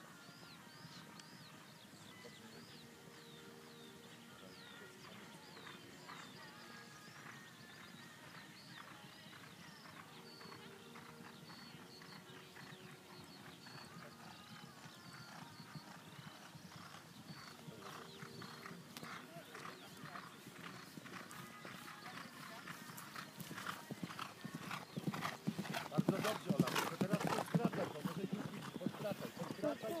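Hoofbeats of a horse galloping on turf across a cross-country course, faint at first and growing louder over the last third as it comes close and passes, loudest a few seconds before the end.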